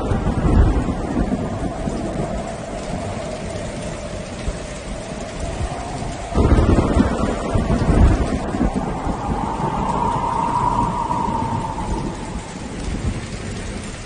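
Heavy rain falling steadily, with low rumbles of thunder swelling about six and eight seconds in. A faint held tone sounds underneath.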